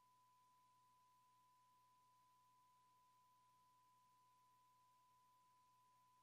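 Near silence: a faint, steady high-pitched tone holds at one pitch over low hiss and hum, with no room chatter heard.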